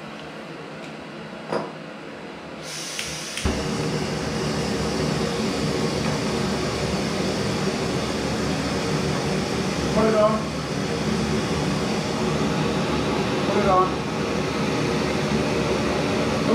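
A pocket rocket canister gas stove being lit: the gas starts to hiss about three seconds in and the burner catches moments later, then burns steadily at full gas with a loud rushing hiss, alongside a second stove already burning.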